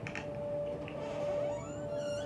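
A bedroom door being pushed open, its hinge creaking in rising squeaks through the second half, over a steady high tone.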